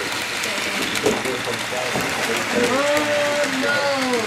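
HO scale Rivarossi Dreyfuss Hudson 4-6-4 model locomotive and its passenger cars running past on the layout track, a steady rolling clatter of small wheels, under the murmur of people talking in the room; a voice comes in over it for the last second or so.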